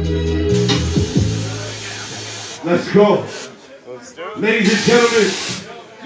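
A sampler beat ends on a held bass note under a hissing noise sweep. A man then speaks over the sound system, with another burst of hiss-like noise behind his voice about two-thirds of the way in.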